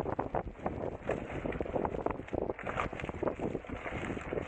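Wind buffeting the microphone of a fast-moving camera, with irregular knocks and crackles from riding over a rough dirt trail.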